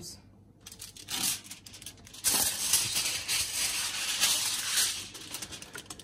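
Sheet of aluminium foil being pulled off the roll and torn off, crinkling loudly for about three seconds from two seconds in.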